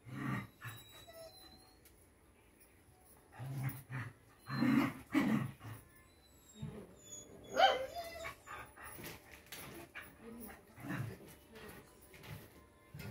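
Rottweiler puppy barking in short separate outbursts: one at the start, a run of about three louder barks around four to five seconds in, and a sharper, higher yelp past the middle, followed by fainter sounds.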